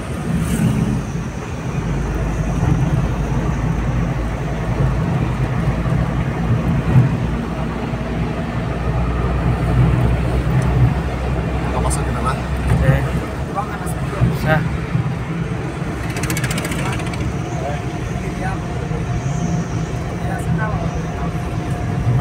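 Steady engine and road rumble of a moving vehicle, heard from inside the cabin while it drives along the highway.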